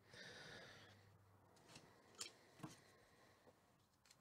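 Near silence: room tone, with a faint soft noise in the first second and two faint clicks a little past halfway.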